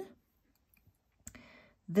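A pause with one short, sharp click a little past the middle, followed by a faint soft breath just before speech resumes.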